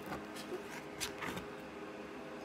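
A cardboard board-book page being turned by hand, giving a few faint taps and rustles.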